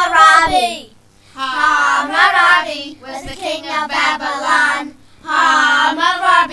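Young children singing the opening lines of a song about Hammurabi, unaccompanied, in three sung phrases with short breaks between them.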